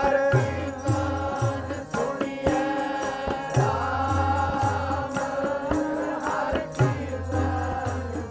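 Gurbani keertan: harmonium and sung voices holding a chanted melody, with tabla keeping a steady rhythm of deep bass strokes and sharp treble strokes.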